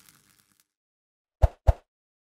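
The faint tail of an intro swoosh fading away, then two quick cartoon-style pops about a quarter second apart: the pop-up sound effect of animated like and subscribe buttons.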